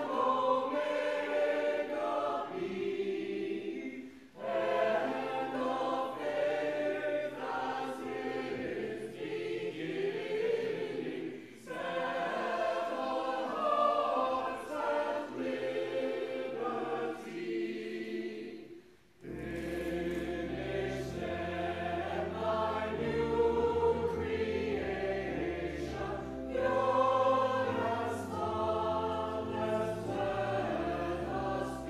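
A mixed church choir singing a hymn in sung phrases with short breaths between them. Deeper low notes join about two-thirds of the way through.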